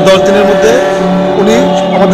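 A man speaking in Bengali, with a steady droning tone held underneath his voice.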